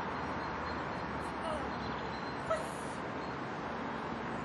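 Steady outdoor background noise, an even hiss, with a few faint short pitched sounds past the first second and a brief one about halfway through.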